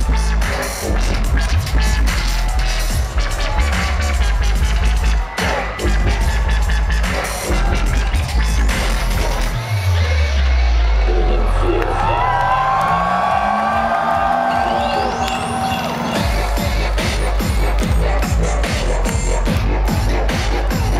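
Loud dubstep DJ set played over a festival sound system, driven by a heavy pulsing bass beat. About halfway through, the beat drops out into a breakdown: a deep bass sweep falls, then rises and holds under a synth melody, and the beat comes back about six seconds later.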